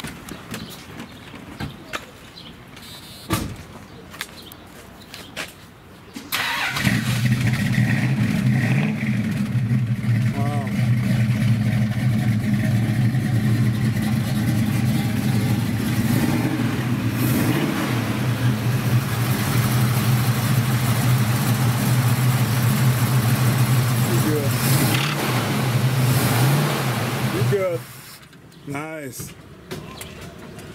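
1973 Ford Mustang's V8 engine started about six seconds in, running at a steady idle, then shut off near the end; it is sounding good.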